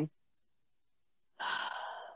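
A woman's breathy sigh into the microphone, starting about a second and a half in and lasting under a second, after a stretch of dead silence.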